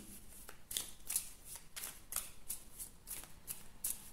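A deck of oracle cards being shuffled by hand: soft, quiet card strokes repeating about three times a second.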